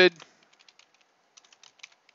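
Computer keyboard typing: a run of light key clicks, a few sparse ones at first and a quicker cluster in the second half.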